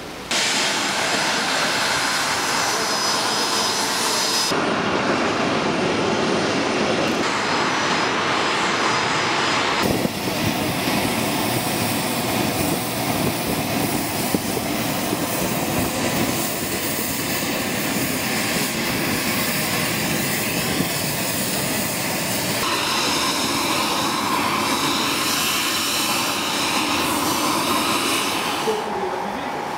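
Jet aircraft engines running on an airport apron: a loud, steady noise with a thin high whine. It changes abruptly several times.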